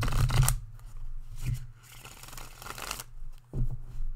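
A deck of tarot cards being riffle-shuffled: the dense riffle runs out about half a second in, followed by softer rustling and flicking of the cards being handled, and a soft knock near the end as the deck is squared.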